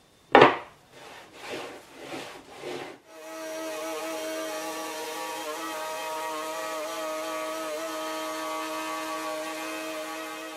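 Knocks and handling clicks, the loudest a sharp knock about half a second in. Then, from about three seconds, a compact trim router comes up to speed and runs at a steady pitch with a hiss as it routes a miter slot wider in a plywood table top.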